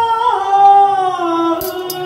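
A woman's solo singing voice in a Xinjiang-style performance, holding long sustained notes that step down and slide lower, settling on a steady low note near the end.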